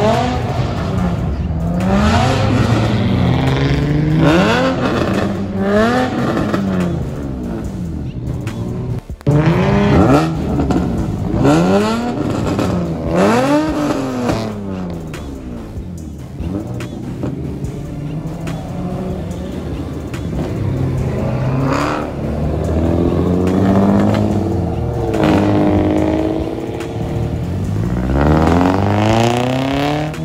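Several car engines revving hard and accelerating away one after another, each note climbing and falling in pitch again and again through the revs and gear changes.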